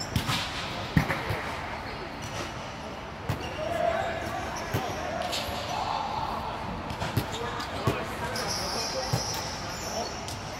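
Volleyballs being hit and bouncing on a gym floor in a large hall: a handful of sharp, irregularly spaced thumps under the chatter of players' voices.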